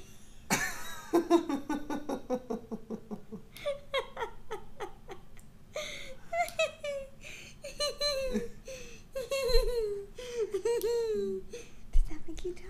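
A baby laughing and squealing in short high-pitched bursts, with a woman laughing along. Near the start there is a run of quick laugh pulses falling in pitch.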